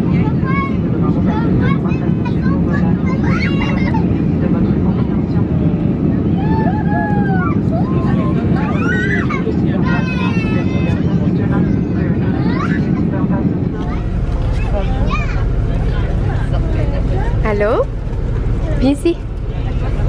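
Airliner cabin noise: the steady hum of the jet engines and rushing air, with a child's voice and other voices coming and going over it. About fourteen seconds in it gives way to a deeper, lower rumble of a bus engine.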